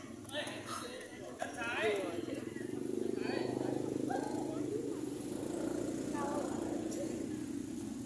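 Scattered voices of people talking and calling out, with a steady engine hum of a motor vehicle coming in about two seconds in and holding to the end.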